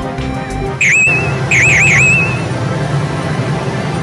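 Electronic chirps from a pachislot machine: one high swooping chirp about a second in, then three quick chirps and a held tone. Machine music ends just before them, and a steady low din of the slot parlour runs underneath.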